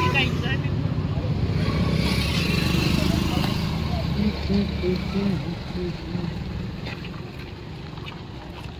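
Road traffic: a vehicle engine running close by, its low rumble fading away over the last few seconds, with people talking in the background.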